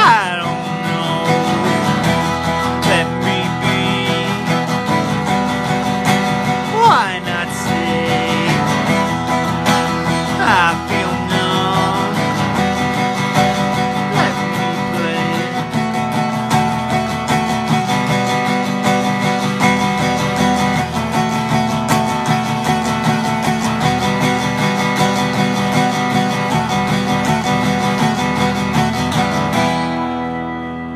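Instrumental guitar music with strummed acoustic guitar and a few notes sliding downward, beginning to fade right at the end.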